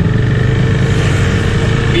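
KTM motorcycle engine running steadily at cruising speed, with wind rushing over the bike-mounted camera's microphone.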